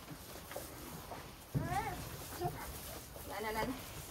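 A young child's high-pitched voice: two short calls or exclamations with wavering pitch, about one and a half and three and a half seconds in.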